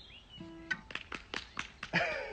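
Soft acoustic guitar sounds: a couple of notes ring briefly, then a quick run of faint percussive strokes, about five a second.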